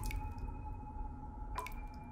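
Two water drips about a second and a half apart, each a sharp plink that leaves a faint ringing tone, over a low steady background hum.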